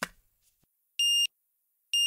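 Two short, high electronic beeps about a second apart, one steady tone each, in a near-silent break in the jingle.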